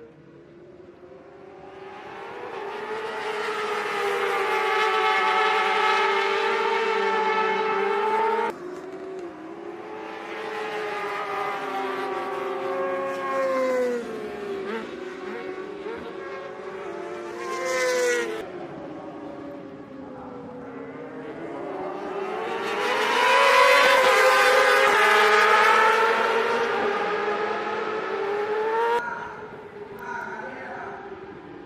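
Racing motorcycles passing at high revs, one after another, their engine notes rising as they come close and sliding down as they pull away. The sound breaks off abruptly about a third of the way in and again near the end.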